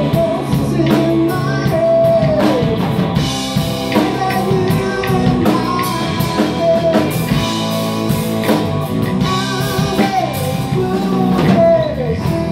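Live rock band playing: two electric guitars, bass guitar and drum kit, with a male lead voice singing over them.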